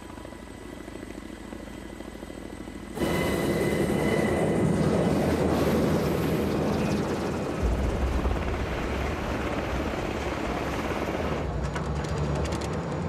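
UH-60 Black Hawk helicopter rotors and turbine engines running steadily, moderately loud at first, then much louder and closer from about three seconds in.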